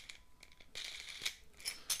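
Hands handling the plastic parts of a washbasin sink trap and its drain strainer with the long central screw: light clicks, rattles and short scrapes of plastic on plastic, busier in the second half.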